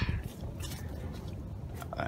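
Low wind rumble on the phone's microphone, with a few faint crackling clicks.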